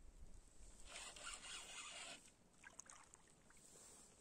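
Near silence, with a faint rustling scrape lasting about a second, starting about a second in.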